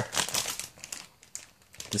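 Clear plastic bag around model-kit parts runners crinkling as it is handled and set down into a cardboard box. The crackle is loudest in the first second and then dies away to a few faint rustles.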